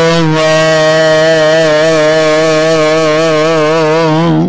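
A voice holding one long sung note with a slow, even waver, as part of a chanted recitation of Gurbani, the Sikh scripture.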